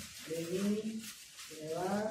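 A person's voice making drawn-out, wordless vocal calls, one after another about every second and a half, the last one rising in pitch.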